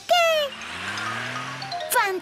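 Cartoon soundtrack: a character's short cry falling in pitch, then about a second and a half of a hissing, whooshing sound effect with a low hum rising under it.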